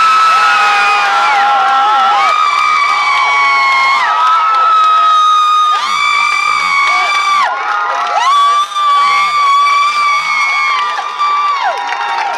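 Crowd cheering with long, high-pitched screams of joy close by, one after another and sometimes two at once, each sliding up at the start and falling away at the end: celebration as a championship win is announced.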